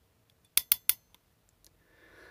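Hand crimping pliers clicking as they close on a wire terminal: three sharp clicks in quick succession about half a second in, then a couple of faint ticks.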